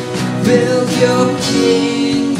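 Contemporary worship song played by a band: a male lead singing over acoustic guitars, a drum kit and a keyboard.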